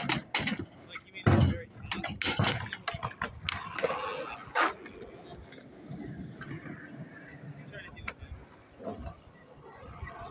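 Skateboard knocking and clacking on concrete several times over the first five seconds, then quieter with a few light clicks; voices are heard in the background.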